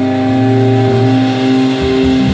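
Live rock band holding a sustained chord on electric guitars and bass, ringing steadily; near the end the low note changes and a pulsing low part comes in.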